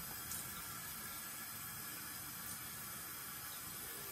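Water running steadily from a tap as a head is wetted for shaving, an even hiss.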